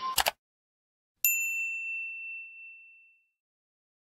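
A single bright ding sound effect that rings out and fades away over about two seconds, coming a second or so after a couple of short clicks at the very start.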